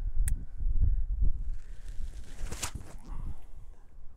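Wind buffeting the camera microphone in gusts, a low rumble that eases off near the end, with a short click early on and a brief hiss about two and a half seconds in.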